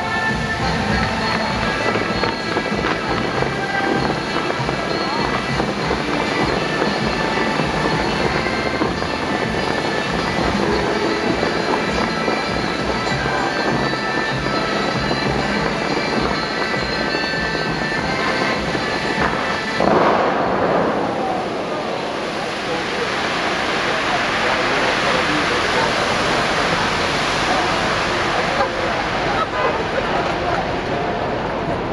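Bellagio fountain show music playing over outdoor loudspeakers. About two-thirds of the way through, a sudden boom as the fountain's jets fire their tallest bursts, then a steady hiss of falling water and spray as the music fades out.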